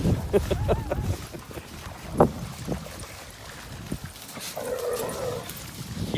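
Dogs playing rough together and vocalizing: a sharp, short dog sound about two seconds in and a longer, wavering one near the end.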